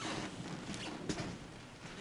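Faint room noise of a large hall with a few soft short rustles or clicks, no clear speech.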